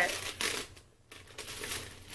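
Rustling and crinkling as a small crushed-velvet chain crossbody bag is handled, in short bursts with a brief lull about a second in.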